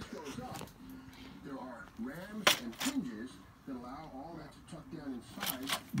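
Faint, indistinct male speech, with a few sharp handling clicks about two and a half seconds in and again near the end.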